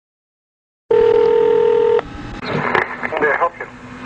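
A telephone tone on the line, a single steady tone for about a second, then clicks and short muffled voice sounds as the call is answered.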